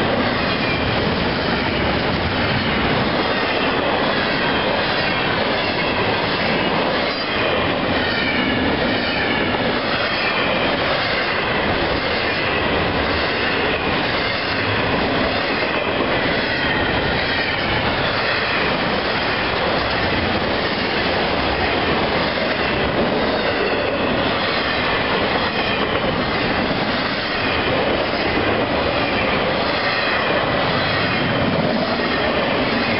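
Intermodal freight train's cars rolling past close by: a steady rumble with wheel clatter over the rail joints and some high wheel squeal.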